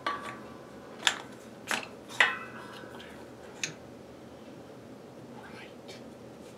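About five sharp metallic clinks and knocks in the first four seconds, the loudest ringing briefly, as a bevel gear box is worked by hand onto its steel shaft.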